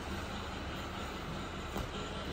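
Steady low hum and hiss of room noise, with a brief soft click near the end.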